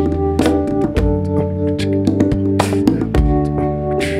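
Live instrumental band music: electric bass guitar playing under sustained chords, over a steady drum beat with a cymbal splash about two-thirds of the way through.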